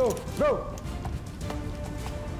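Quick running footsteps of a squad of boots on a hard tiled floor, a string of light repeated footfalls.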